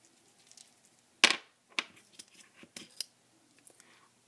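Folded paper slips rustling and crinkling in a small plastic cup as one is drawn out, with a few sharp crackles, the loudest about a second in.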